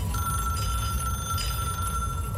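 Telephone ring sound effect in a music video's soundtrack: one steady high tone held throughout, over a low rumble.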